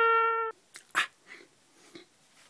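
A held brass note, like a trumpet, cuts off abruptly about half a second in; then a few short, sharp sounds follow, the loudest about a second in.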